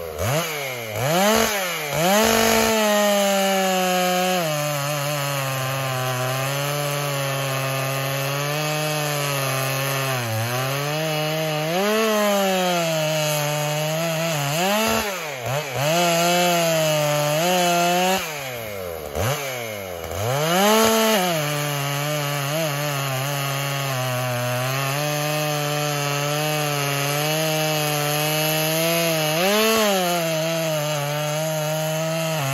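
Dolmar PS-7300 two-stroke chainsaw cutting through a large log, the engine held steady under load in the cut, with its pitch rising sharply several times as the chain revs free and dropping again as it bites back into the wood.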